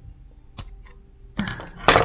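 Scissors snipping through a wooden toothpick, a sharp crack about half a second in, then a louder clack near the end as the metal scissors are put down on the table.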